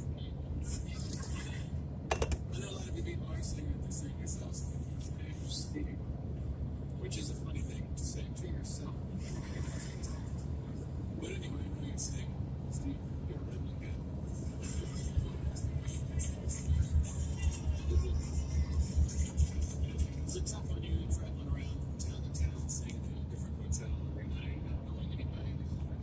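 Car cabin road noise at highway speed, a steady low rumble, with faint speech and music from the car's audio under it. The rumble grows louder and uneven about two-thirds of the way through.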